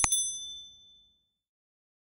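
Subscribe-button animation sound effect: a sharp mouse click, then a bright notification-bell ding that rings with several high tones and fades out over about a second and a half.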